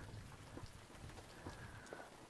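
Faint, scattered drips of snowmelt water falling from the roof.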